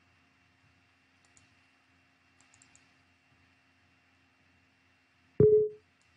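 Faint clicks, then about five and a half seconds in a short, loud Windows system chime with one clear tone that dies away quickly, as a User Account Control prompt opens.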